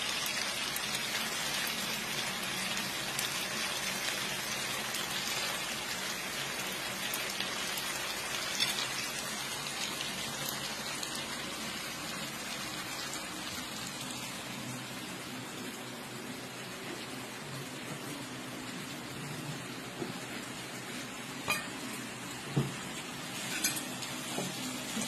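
Slices of pork belly sizzling in a grill pan, a steady hiss that eases slowly, with a few sharp clicks near the end.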